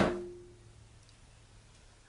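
A single sharp knock with a short low ring fading over about half a second: the black carrying case of a Singer Featherweight sewing machine being shut and handled.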